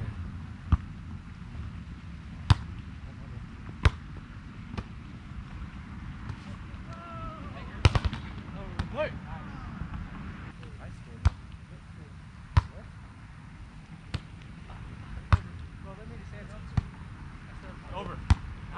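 Volleyball being struck by hand: about ten sharp slaps spaced roughly a second and a half apart over steady low background noise.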